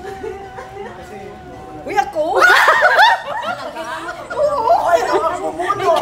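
A steady held tone for about two seconds, then a group of people bursts into loud laughter and excited exclaiming that carries on to the end.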